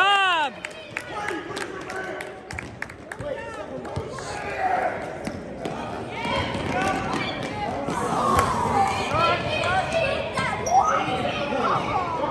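A basketball being dribbled on an indoor gym court, a run of repeated bounces, with players' sneakers and shouting voices from the players and spectators around it.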